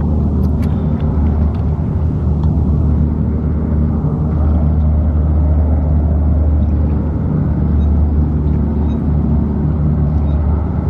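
U.S. Navy LCAC hovercraft running at speed over the water: a loud, steady low drone from its gas turbines, lift fans and ducted propellers, more like an overblown vacuum cleaner than a ship. It grows a little louder from about four seconds in.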